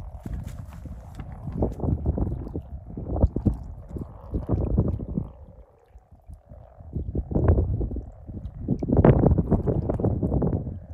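Many common frogs croaking together in a shallow breeding pool at spawning time: a dense run of overlapping low, purring croaks, swelling louder twice late on.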